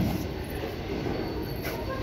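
Steady rumbling background noise of a large warehouse store, with no clear single event.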